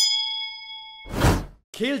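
A bright chime-like ding sound effect that rings on for about a second, followed by a short whoosh. A voice begins near the end.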